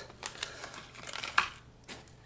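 Light clicks and crinkling from small lures and plastic being handled in a clear plastic compartment tackle box, with one sharper click about one and a half seconds in.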